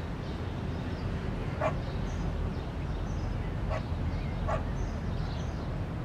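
A dog barking three times, short sharp barks spaced a couple of seconds apart, over a steady low rumble.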